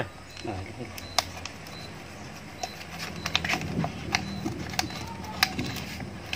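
Scissors cutting into a thin plastic drink bottle: a run of irregular sharp snips and plastic crackles.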